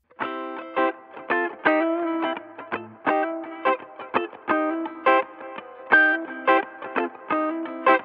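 Background music: a repeating riff of short plucked notes that begins abruptly right at the start.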